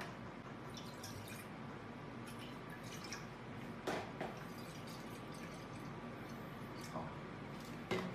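Milk pouring from a plastic bottle into a steel pot, a faint steady liquid sound, with a few light knocks as the bottle is handled.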